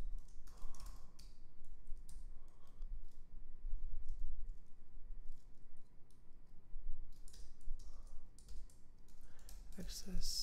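Computer keyboard being typed on: irregular runs of keystroke clicks with short pauses between them.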